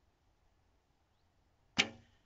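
A 35-pound Black Widow recurve bow shot: near the end, one sharp snap of the string as the arrow is loosed, followed by a brief ring.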